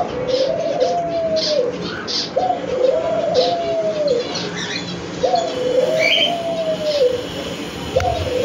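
White ringneck dove cooing three times, each coo a drawn-out rising, held and falling note repeated about every two and a half seconds. Cockatiels add a few short high chirps between the coos.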